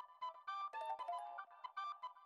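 A phone ringtone playing a quick electronic melody of short notes.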